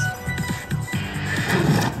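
Slot machine bonus-round music with a pulsing bass beat.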